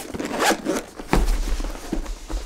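Zipper on a zippered fabric radio carrying case being run, with a soft thump about a second in as the case is handled on the table.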